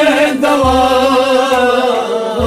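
Kashmiri Sufi kalam being sung: a male voice holds a long, slowly wavering melodic line over musical accompaniment, with a deep low note coming in about half a second in.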